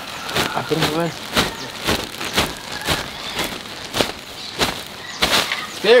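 Cypress mulch poured out of a plastic bag: the bag crinkles and the mulch falls in a run of irregular rustles and crackles.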